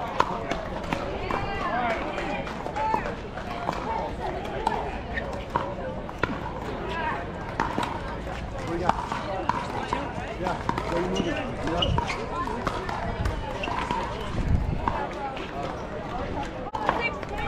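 Pickleball paddles popping against the plastic ball as a rally ends just after the start, then a steady hubbub of voices from players and spectators, broken by scattered paddle pops.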